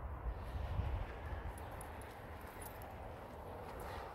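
Low, uneven wind rumble on the microphone, with faint footsteps of someone walking and a few faint clicks in the middle.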